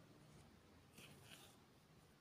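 Near silence, with a faint, brief rustle about a second in as beading thread is drawn through seed beads by hand.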